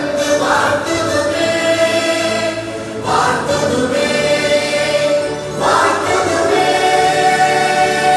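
A choir singing a slow song in long held notes, a new phrase starting about every two and a half seconds.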